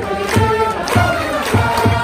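A Japanese baseball cheering section playing a cheer song on trumpets over a steady bass-drum beat, with the crowd of fans singing along.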